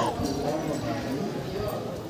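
Indistinct voices of people talking in the background, with a few light knocks.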